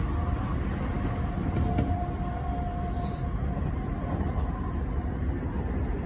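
Train running, heard from inside the carriage: a steady low rumble with a faint steady whine in the first half.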